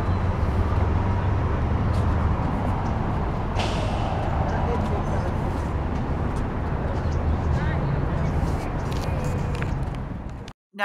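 Steady low rumble of nearby road traffic.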